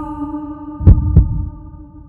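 A steady held drone with a heartbeat-like double thump about a second in, two low beats in quick succession; the drone fades away near the end.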